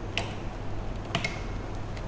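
Two sharp clicks about a second apart as banana-plug patch leads are handled and pushed into the trainer's terminal sockets, over a low steady hum.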